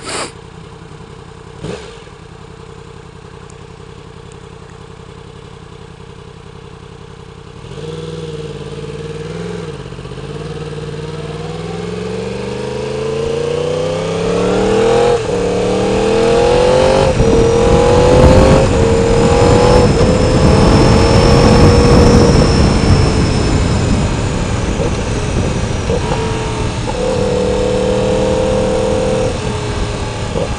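2016 Yamaha R1's crossplane inline-four, fitted with a new exhaust, idling and then pulling away about eight seconds in. It revs up through several quick gear changes, is loudest in the middle, eases off, and settles into a steady cruise near the end.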